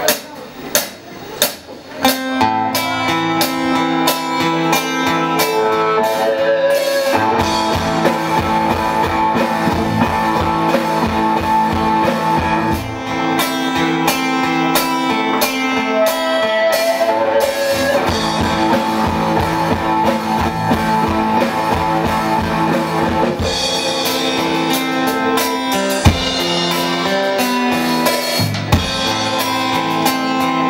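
Live rock band playing an instrumental intro: electric guitars, bass guitar and a Tama drum kit. A few sharp strikes open it, the guitars and bass come in about two seconds in, and the drums fill out from about seven seconds.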